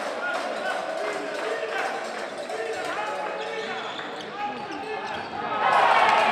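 A handball bouncing on an indoor court floor during play, with players' and spectators' voices in a large echoing sports hall. The crowd noise swells suddenly near the end.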